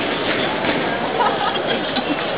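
Crowd hubbub: many people talking indistinctly at once in a steady background babble, with no single clear voice.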